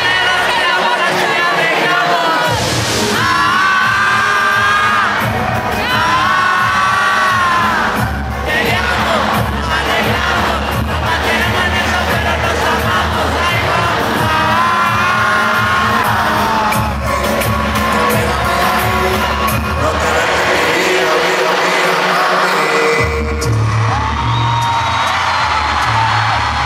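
Live reggaeton concert music over an arena sound system: sung vocals over a heavy bass beat that drops out at the start and again about three quarters of the way through, with the crowd singing along and cheering.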